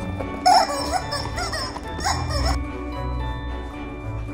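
Dog whining and yipping in a quick run of high, bending cries lasting about two seconds, the loudest right at the start, over steady background music.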